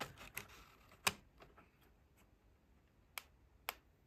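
Plastic clicks and knocks from a handheld computer's case being handled as its slide-out keyboard is pushed open: a cluster of clicks with light rustling in the first second, the loudest about a second in, then two sharp clicks half a second apart near the end.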